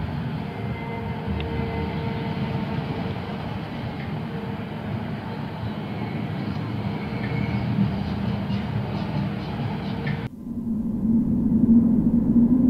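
Distant funfair noise across an open field: a steady low rumble with faint mixed sounds. About ten seconds in it cuts off abruptly, and a low swelling tone from the outro music begins.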